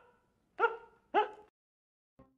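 A man's high-pitched, shrieking giggle: two short whoops, each rising then falling in pitch, about half a second apart, stopping about halfway through.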